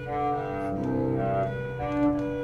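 Solo cello bowed: a low note sustained steadily beneath higher notes that change about every half second.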